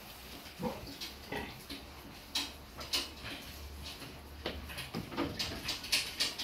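Pig grunting in short, scattered calls, with small clicks from handling.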